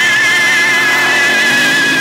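Car tyres squealing continuously on asphalt as a vehicle slides sideways with its wheels spinning, throwing up tyre smoke. An engine revs underneath the wavering squeal.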